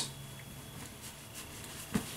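Faint rubbing of hands working aftershave balm, a few soft rustles over quiet room tone, with a small click near the end.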